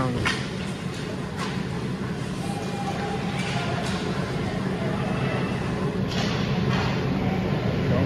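Ice hockey play in an indoor rink: a steady low hum with faint scrapes and knocks of skates and sticks on the ice, and distant voices.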